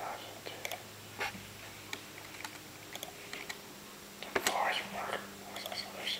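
A whispered voice among scattered small clicks and taps, with a denser, louder stretch about four and a half seconds in.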